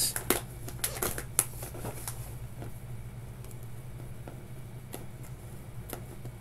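Paper padded mailer crinkling and crackling as it is handled and slit open with a small slicer: several sharp crackles in the first two seconds, then quieter scraping and occasional ticks.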